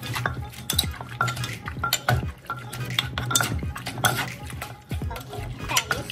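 Wooden pestle pounding shredded carrot salad in a mortar, about two to three strokes a second, while a spoon scrapes and turns the mix against the bowl.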